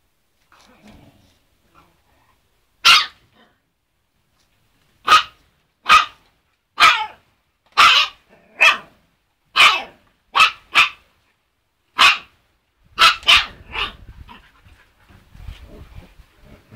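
Husky puppy barking: about a dozen short, high-pitched barks roughly a second apart, two of them coming close together near the end.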